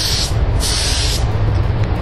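DeVilbiss DV1s mini paint spray gun, fitted with a 1.0 mm nozzle and hybrid air cap, spraying a test pattern onto paper in two bursts of hiss. The first burst cuts off just after the start; the second lasts about three-quarters of a second. A steady low rumble runs underneath.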